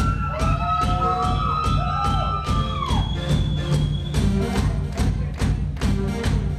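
Live band playing on electric guitars, bass and drum kit. The drums keep a steady beat, and a lead line holds long notes with bends through the first half.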